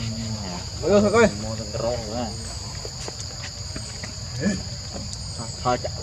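A steady, high-pitched chorus of insects, unbroken throughout.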